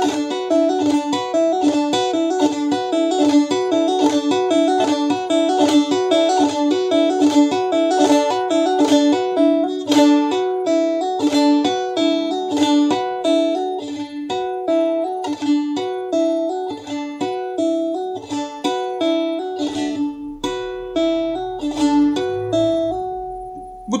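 Bağlama played şelpe style, the fingers striking and hammering the strings with no plectrum, running a repeating pattern of quick, even notes at a faster tempo. The notes stop about a second before the end.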